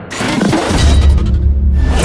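Logo-reveal sound design over music: a glass-shatter effect bursts out just after the start, then a deep bass hit is held beneath the music. A second bright burst comes near the end.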